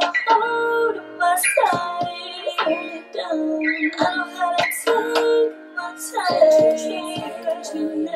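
A song playing back during mixing: sustained chords with sharp percussive hits and a female voice singing.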